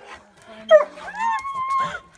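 Excited dog yelling at its owner in greeting: a whining cry that breaks out about two-thirds of a second in and stretches into one long, high, slightly rising whine held for about a second.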